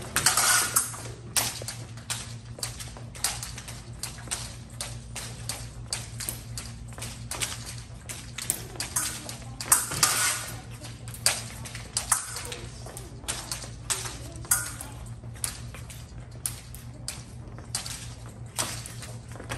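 Épée bout: irregular metallic clinks of blades and quick footsteps on the fencing piste, with a louder flurry about ten seconds in, over a steady low hum.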